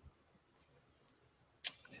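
Near silence: quiet room tone, until a man starts speaking near the end with a sharp breathy onset.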